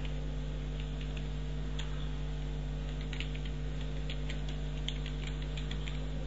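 Computer keyboard typing, a scattering of short, irregular key clicks over a steady electrical hum.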